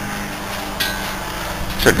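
A steady low hum runs throughout. About a second in there is a short rustling scrape.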